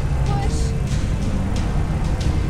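Film soundtrack: music over a heavy, steady low rumble, with short hissing accents every fraction of a second.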